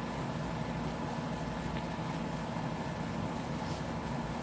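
Steady background hum and hiss with a few faint steady tones, unchanging throughout.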